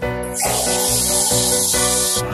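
Water gushing from a wall tap as it is turned on, a steady hiss that starts a moment in and cuts off suddenly at the end, over background music.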